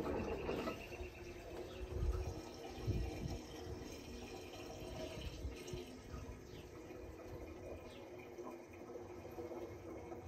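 Diesel fuel pouring from a plastic five-gallon jug into a Ford 1210 compact tractor's fuel tank: a steady flow of liquid, loudest in the first couple of seconds and then settling lower.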